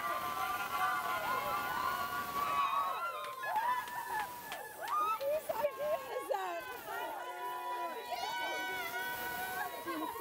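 A small crowd of excited women shouting, squealing and laughing all at once in a small room, in celebration.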